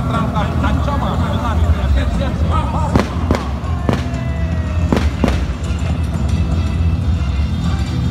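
Five sharp bangs from a mock-battle display: two close together about three seconds in, one more shortly after, then another pair about five seconds in. They sound over music and a steady low hum.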